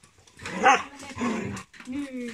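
Shepherd-type dogs growling and giving a bark as they jump up at a person in excited greeting, loudest about a third of the way in.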